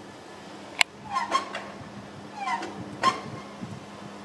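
A soaring bird of prey calling: a sharp click about a second in, then a few short, high, cat-like calls, each bending in pitch.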